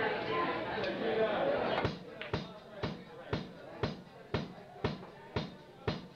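Chatter from the club audience, then about two seconds in a drum kit starts a steady beat of sharp hits, about two a second, as a live rock band's song begins.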